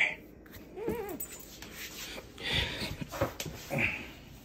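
Belgian Malinois whining, one short whimper that rises and falls in pitch about a second in, with a few short noisy bursts from the dog later on.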